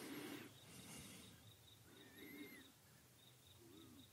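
Near silence: room tone with faint chirping in the background, a quick row of tiny ticks throughout and a single faint rising-and-falling call about two seconds in.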